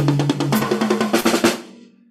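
Drum kit fill played fast in sixteenth-note triplets: a rapid run of strokes that stops about a second and a half in and rings out briefly.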